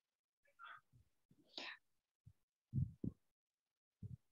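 Faint breathing and soft mouth sounds close to a microphone, with a few short, soft low thuds.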